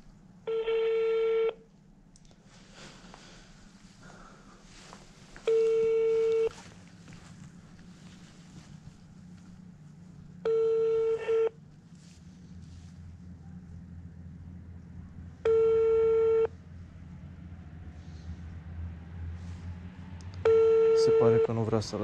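Telephone ringback tone on an outgoing call: five one-second tones, one every five seconds, as the line rings while the customer has not yet answered.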